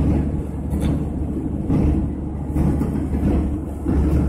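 Inside a moving car: the steady low rumble of engine and tyre noise while driving along a road.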